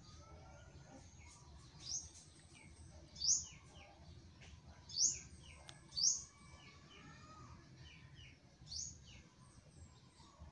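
Birds chirping in the background, with short high chirps every second or two and fainter lower calls between them.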